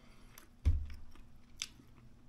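A single dull thump on the table about two-thirds of a second in, with a couple of faint light clicks around it.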